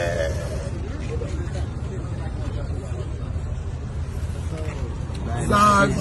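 Steady low rumble under indistinct voices, with a man's voice loud about five and a half seconds in.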